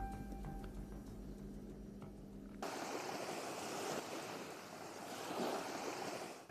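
A faint steady hum, then about two and a half seconds in a sudden switch to outdoor ambience: a steady rushing noise like wind through foliage or running water.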